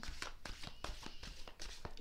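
Tarot cards being shuffled by hand: a quick, irregular run of soft card flicks and slaps.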